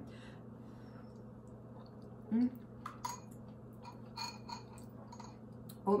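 A person quietly chewing a mouthful of oatmeal, with a hummed "mm-hmm" a couple of seconds in and a few faint clicks of mouth or spoon in the second half.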